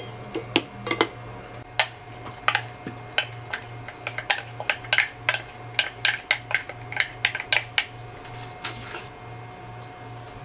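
Utensils clinking and knocking against pots and dishes in quick irregular succession, well over a dozen light clinks, stopping about nine seconds in, over a steady low hum.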